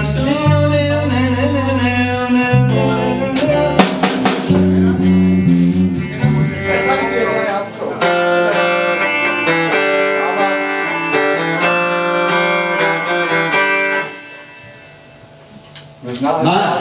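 A band rehearsing live: guitars playing with a low bass line. The bass drops out about halfway through, and the playing stops about two seconds before the end.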